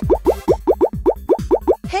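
A rapid string of cartoon pop sound effects, each a quick upward-sliding bloop, about seven a second, over background music.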